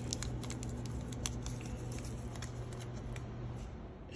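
A steady low hum that stops shortly before the end, with scattered light clicks and rustles of things being handled on a kitchen counter.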